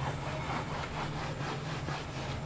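Board duster rubbing back and forth across a whiteboard, wiping off marker writing in quick strokes about four a second.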